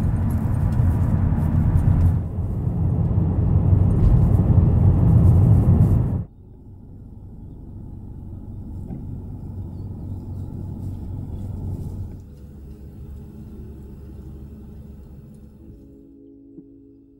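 A loud, steady rushing rumble cuts off suddenly about six seconds in. A quieter low rumble from inside a car's cabin follows, and it drops lower again a few seconds before the end.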